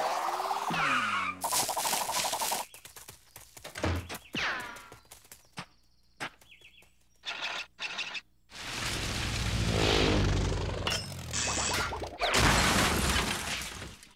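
Cartoon sound effects: a whirring spin that glides up and then down in pitch, a run of clicks and clatter, then a long swelling rumble and a second loud burst of noise near the end.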